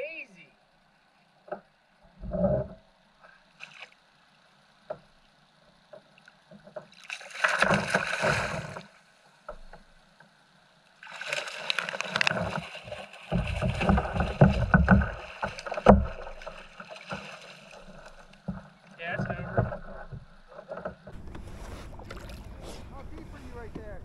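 Water splashing and handling knocks on a fishing kayak as a hooked fish is brought alongside and netted, in irregular bursts with heavy low thumps in the middle.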